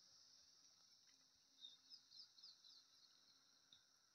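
Near silence: a faint, steady high insect hum, with a few quick chirps about halfway through.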